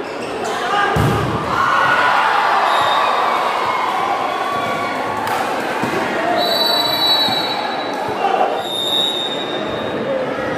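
Volleyball spike at the net: the ball is struck hard about a second in, with a second ball impact midway, over steady shouting and cheering from spectators in an echoing gym. A high whistle sounds twice in the second half.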